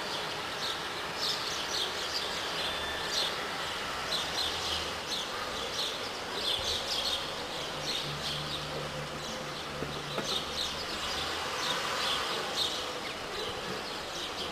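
Small birds chirping in quick, repeated short calls, over a low engine hum from a car moving slowly at low speed.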